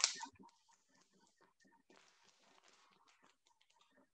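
Faint crinkling and rustling of a plastic sous vide bag being handled and opened, with a brief handling knock right at the start.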